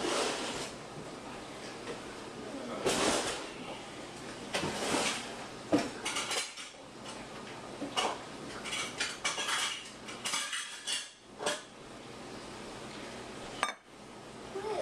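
Kitchen dishes and metal utensils clattering and clinking in an irregular run of knocks and rattles, with a busier stretch of rattling past the middle, as a stainless steel cup and other kitchenware are handled and set down on a counter.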